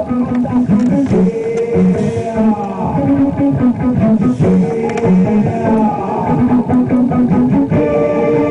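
Electric bass guitar playing a repeating riff of short plucked notes in a steady rhythm.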